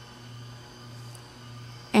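A steady low background hum with a faint higher whine, room tone with no other sound.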